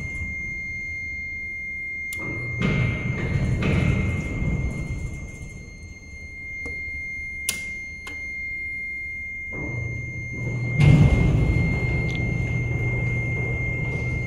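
Freight elevator: sharp clicks of its push buttons, then about ten seconds in a low electric hum starts, followed by a loud clunk and a continuing rumble of the elevator machinery setting to work. A steady high whine runs underneath throughout.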